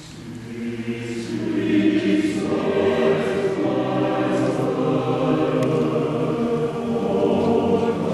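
Large men's choir singing, starting soft and swelling to full voice over the first two seconds, then holding sustained chords.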